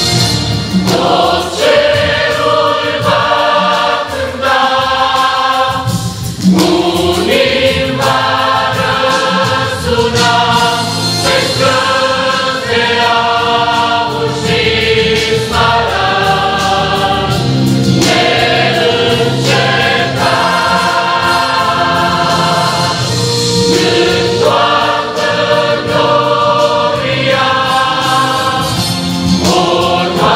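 Large mixed choir of men and women singing a hymn together in full chords, with notes held in steady phrases.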